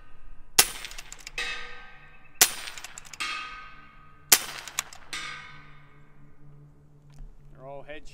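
FX Impact M3 PCP air rifle in .357 fired three times, about two seconds apart. Each shot is followed just under a second later by the ringing clang of the bullet striking a steel coyote silhouette target.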